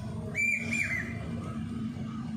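A short, high whistle-like call about half a second in, held briefly and then dipping twice, over a steady low hum.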